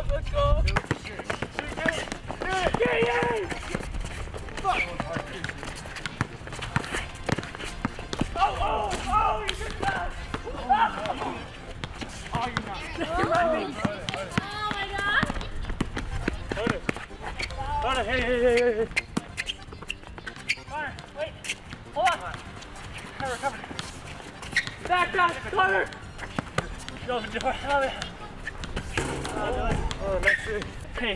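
Young men's voices calling out and shouting across an outdoor basketball court during play, with the basketball bouncing on the asphalt as short knocks.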